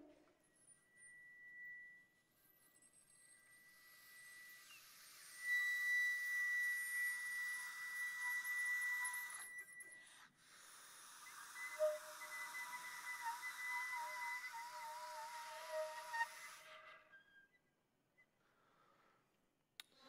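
Experimental music for flute and voice with electronics: a high, steady whistle-like tone is held for several seconds over a breathy hiss, then a wavering tone comes in. The sound falls away near the end.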